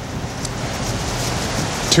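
Wind blowing on an outdoor microphone in gusty, showery weather: a steady rushing noise. A man's voice starts just at the end.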